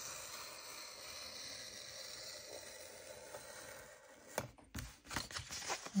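Craft knife cutting a page out of a hardback book along the spine: faint scraping at first, then, over the last two seconds or so, a quick run of sharp scratches and paper rustles as the blade goes through the paper.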